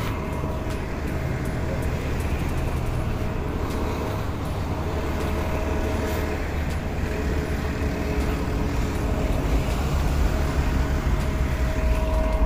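Street traffic: a city transit bus running close by and cars driving past, a steady low drone with a faint steady hum above it.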